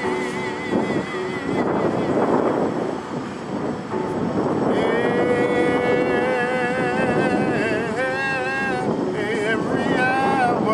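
A man singing a gospel song to electronic keyboard accompaniment, holding long notes with vibrato in the second half. A rushing noise sits under the music in the first few seconds.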